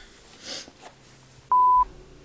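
A single short electronic beep, one steady mid-pitched tone lasting about a third of a second, coming about one and a half seconds in over faint room noise.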